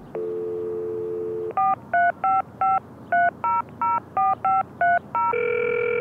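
Telephone dial tone, then eleven quick touch-tone (DTMF) beeps as a phone number is keyed in. A longer steady tone starts near the end as the call goes through.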